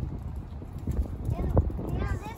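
Irregular low thumps and knocks, strongest about halfway through and again near the end, over a low rumble.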